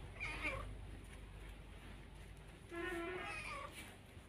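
Young domestic cat meowing twice: a short meow just after the start and a longer, louder one about three seconds in.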